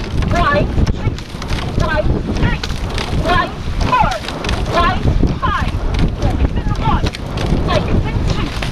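Wind buffeting the microphone and water rushing past a racing rowing shell, with short, repeated shouts over the top of it.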